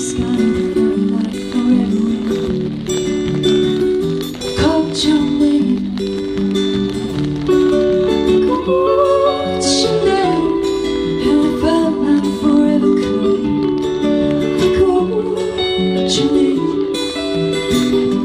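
A live band playing a song, with strummed acoustic guitar, electric guitars and drums.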